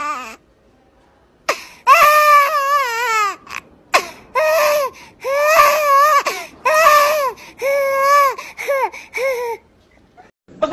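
A high-pitched crying voice wailing in a run of long cries with a wobbling pitch, starting about two seconds in and going on with short breaks between cries.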